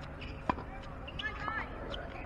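A single sharp tennis-ball impact about half a second in, followed by a few brief high squeaks.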